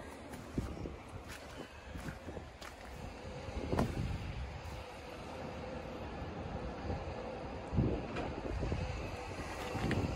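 Wind rumbling on the microphone, with a few faint footsteps in wet mud.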